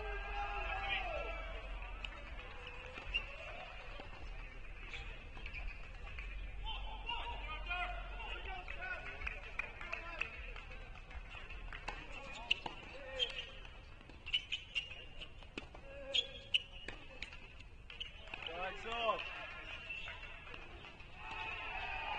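Distant voices talking across the courts, with a run of sharp tennis-ball knocks a little past the middle.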